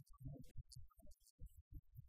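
Near silence with faint, irregular low thumps.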